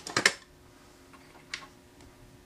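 A few short clicks right at the start, then quiet room tone with a faint steady hum and a single sharp click about one and a half seconds in.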